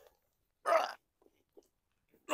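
A man's single short non-word vocal sound, under half a second long, a little over half a second in.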